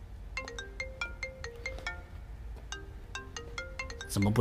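Mobile phone ringtone: a quick melody of short notes that breaks off about two seconds in and then starts again, with the call left unanswered.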